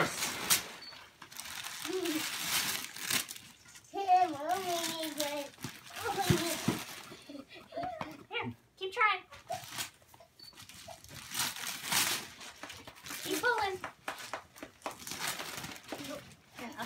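Wrapping paper being torn and crumpled in repeated bursts as a toddler pulls it off a gift, with short pitched vocal sounds from a child's voice in between.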